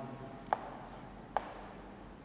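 Chalk writing on a chalkboard: a faint scratching with two sharp taps of the chalk against the board, about half a second in and again about a second and a half in.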